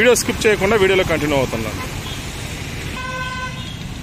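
Road traffic passing, with a single short vehicle horn toot, one steady tone about half a second long, about three seconds in.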